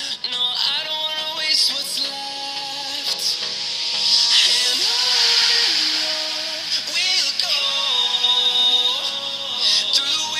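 A song with singing playing through a Philips TAT4205 true wireless earbud, picked up by a lavalier microphone held right against the right earbud.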